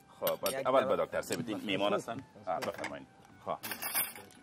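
Plates and cutlery clinking as dishes are handled and set out on a table, with a sharper clink near the end; men's voices talk over it.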